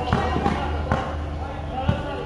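Basketball being dribbled on a plastic sport-tile court: a few sharp, unevenly spaced bounces.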